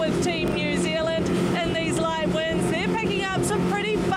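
A chase motorboat's engine running fast, at about 40 knots: a steady drone under a woman's voice, with rushing air and water noise.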